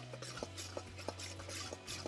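Metal tongs stirring dry breadcrumb stuffing in a stainless steel bowl: a run of quick, irregular clicks and scrapes of metal on metal.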